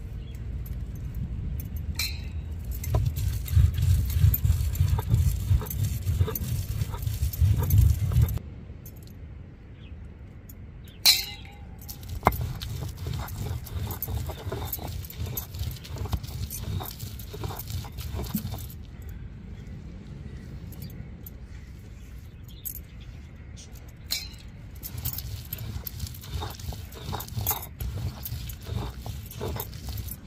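Stone roller rolled and rubbed back and forth on a flat stone grinding slab (ammikkal), grinding a chilli masala: a low, rhythmic grinding rumble of repeated strokes, heavier in the first eight seconds, with a sharp knock about eleven seconds in. Bangles clink with the strokes.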